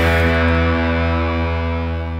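Post-rock music: a sustained distorted electric guitar chord rings out and slowly fades as the track closes, its brighter overtones dying away first.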